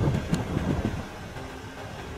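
Low, uneven rumble of a vehicle's engine idling, a little louder in the first second.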